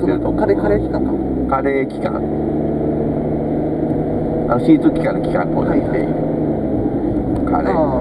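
Steady road and engine noise inside the cabin of a moving car, with a low hum, and brief bits of talk.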